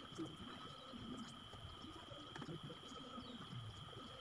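Faint, low cooing of a dove, repeating over a steady high-pitched hum, with a light click about a fifth of a second in.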